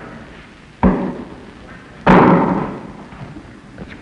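Two sudden bangs in a workshop: a sharp knock about a second in, then a louder bang about two seconds in that fades out over roughly a second.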